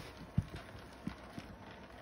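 Four dull, low thumps in under two seconds, the loudest a little under half a second in, from a handheld phone being swung and bumped while filming. A faint steady background noise lies underneath.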